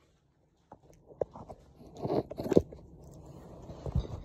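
Handling noise right on a phone's microphone: a few sharp clicks, then crunchy rubbing and scraping that is loudest about two seconds in.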